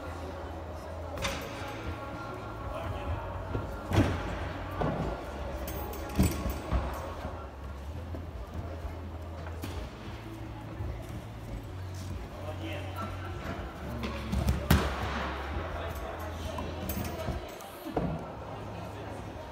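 Gymnastics training hall ambience: distant voices and some music over a steady low hum, with a few sharp thuds from gymnastics apparatus and landings. The loudest thuds come about four seconds in and again about fifteen seconds in.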